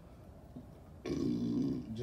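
A man's low, drawn-out vocal sound, held on one steady pitch for about a second, starting about halfway in.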